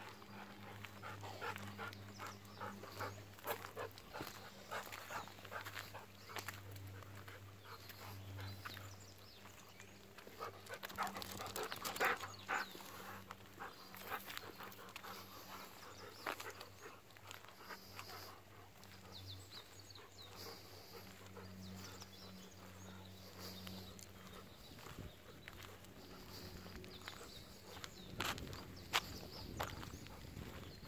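Golden retrievers walking on a concrete path: irregular light clicks and steps of paws and claws, with a dog's panting. A steady low hum runs underneath.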